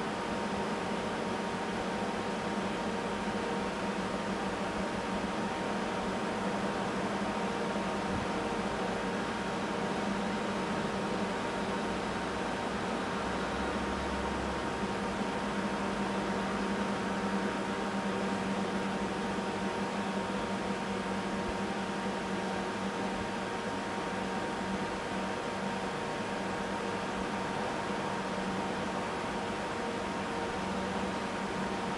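Steady hum and hiss of a fan-like machine, with a few constant tones and no change.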